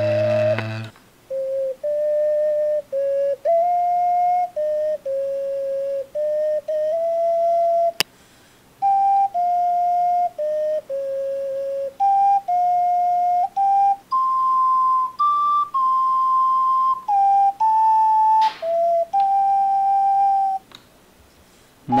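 Unaccompanied ocarina playing a melody of separate held notes that step up and down within about an octave, with short breaks between phrases. There is a single sharp click about eight seconds in.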